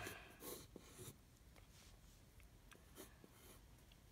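Faint scratching of a wooden graphite pencil sketching on paper, in a few short strokes that thin out to scattered light ticks.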